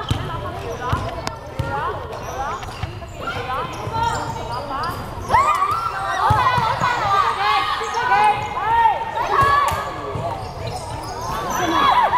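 A basketball being dribbled on a hardwood gym floor, its bounces echoing in the hall. From about halfway on, short high squeaks and shouting voices join in as players scramble under the basket.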